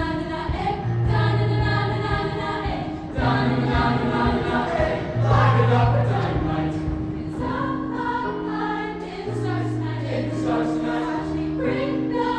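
Show choir singing an upbeat pop song, many voices together, with low notes held for a second or two at a time beneath them.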